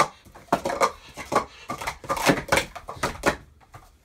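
Plastic sport-stacking cups clattering as they are quickly stacked up and taken down, a rapid run of light clacks from about half a second in until shortly before the end.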